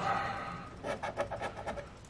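Coin scraping the coating off a scratch-off lottery ticket. A quick run of short strokes comes about a second in and uncovers one number.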